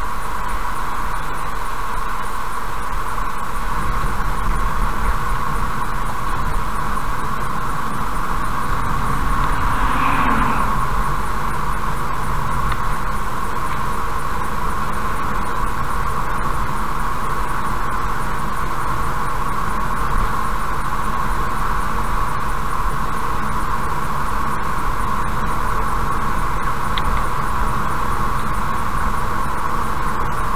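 Steady road noise inside a car cruising at about 50 km/h on asphalt: tyre roar and engine rumble, heard through the dashcam microphone. A brief swell of noise comes about ten seconds in, as an oncoming vehicle passes.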